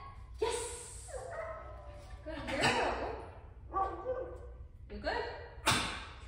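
A woman speaking in short phrases, about six of them with brief gaps between.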